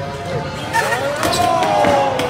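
A skater bails: the skateboard and his body hit the concrete floor with several sharp knocks about a second in. Several onlookers then react with overlapping drawn-out groans and shouts over background music.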